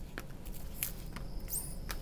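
Gloved hands handling a central line kit's plastic guidewire sheath as it is taken apart: a few faint clicks and a brief high squeak about one and a half seconds in.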